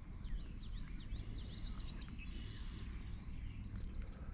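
Songbirds singing: a fast run of short down-slurred notes, then higher notes and a brief steady whistle near the end, over a steady low rumble.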